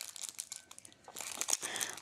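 Packaging crinkling as it is handled and opened: a run of small crackles that gets louder after about a second.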